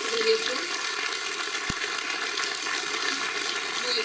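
Audience applauding: steady, even clapping from a large crowd.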